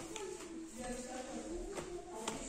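Quiet voices talking in the background, with a few faint knocks.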